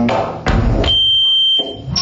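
Live electronic music: a short burst of deep noise, then a steady high electronic tone held for about a second, which jumps abruptly to a higher tone near the end. Chopped instrument-like notes sit on either side.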